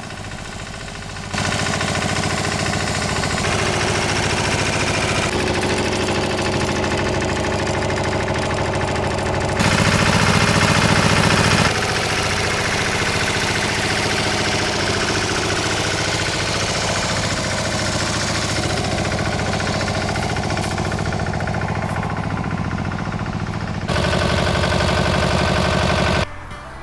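Engine of a two-wheel walking tractor running steadily as it pulls a digging implement along a potato row. The sound changes abruptly in level and tone several times, and is loudest for about two seconds near the middle.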